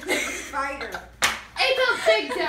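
A broom struck once, hard and sharp, on a wooden floor about a second in, swatting at a bug, amid girls' excited voices.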